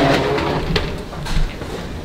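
Escalator running: a low steady hum with about three faint knocks spaced over a second or so.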